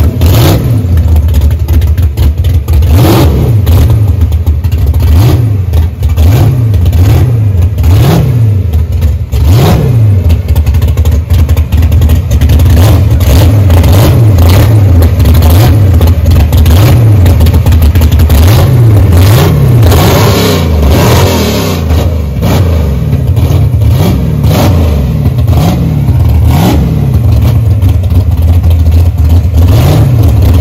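A 1970s Dodge Challenger Pro Stock drag car's V8 being revved again and again as the car creeps along. Its note rises and falls with a throttle blip about once a second, and it drops back between the blips.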